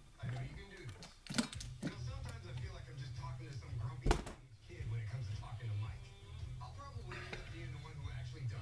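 Background music with faint voices under it, broken by a few sharp clicks and knocks from hands handling the guitar neck; the loudest click is about four seconds in.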